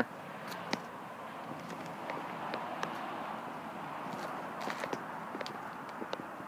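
Faint footsteps on a paved lot with light ticks over a steady outdoor hiss.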